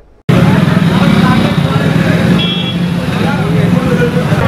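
Loud street ambience that starts suddenly after a brief gap: a dense din of many overlapping voices with traffic noise underneath.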